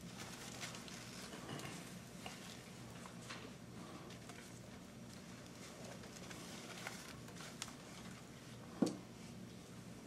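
Hushed room tone: a low steady hum with scattered faint rustles and small clicks, and one sharper knock near the end.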